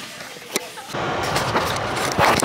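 Steady road noise heard inside a moving car's cabin, starting about halfway in after a quieter stretch with a single click.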